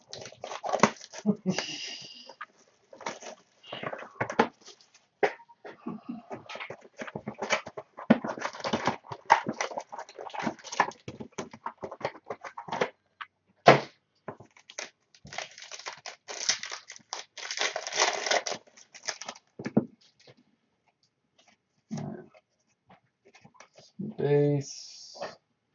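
Trading-card packs being torn open and the cards handled: a quick, irregular run of wrapper crinkles, rips and cardboard flicks that thins out near the end.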